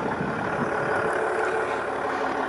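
Land Rover Discovery's 3.0-litre SDV6 diesel engine idling steadily.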